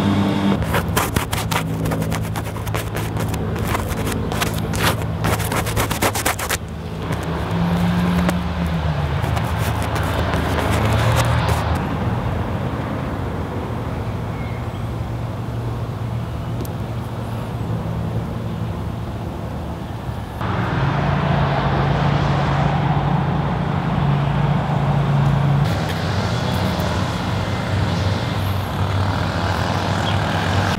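A motor vehicle engine running steadily, its pitch falling once about eight seconds in and its sound growing suddenly louder about twenty seconds in. Over the first six seconds, a rapid run of sharp clicks.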